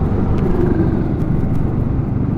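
Yamaha R15 V3's single-cylinder engine running steadily as the motorcycle cruises at low speed, mixed with wind and road noise.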